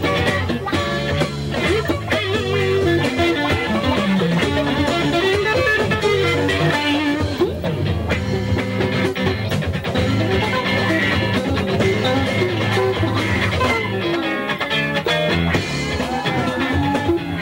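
Live blues-rock band with electric guitar playing, the guitar line bending and sliding in pitch over a steady bass and drum backing.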